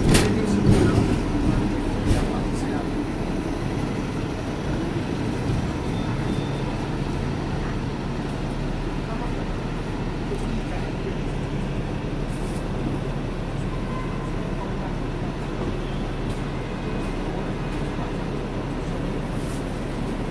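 Hong Kong double-decker electric tram running along its rails, heard from on board: a steady rumble with a low steady hum that comes in about six seconds in, and a couple of knocks near the start.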